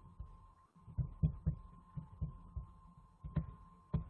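Irregular soft low thumps, about three a second, some with a light click on top, over a faint steady high tone.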